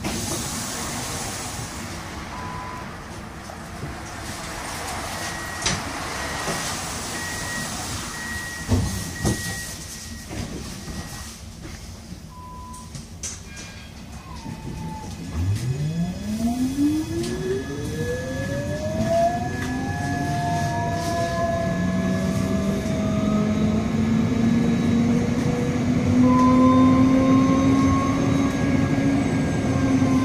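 Siemens Avenio tram heard from inside the passenger cabin. Short electronic beeps sound while it stands at the stop, then about halfway through the traction drive starts up with an electric whine rising steadily in pitch as the tram pulls away and gathers speed, getting louder to the end.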